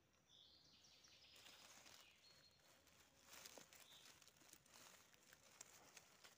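Near silence: faint rustling in dry oak leaf litter.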